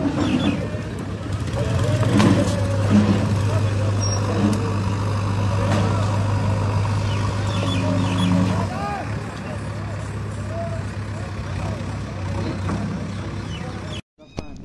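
A motor engine running steadily with a low hum that grows louder about a second and a half in and drops back about nine seconds in, over outdoor noise and indistinct voices.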